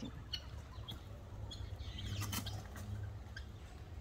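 Helmeted guinea fowl squabbling with doves: scattered short chirps and clicks, with a flurry of wing flaps a little past two seconds in, over a low steady rumble.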